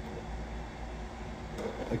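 Steady low background noise of a small room between spoken lines, with a faint tap about one and a half seconds in.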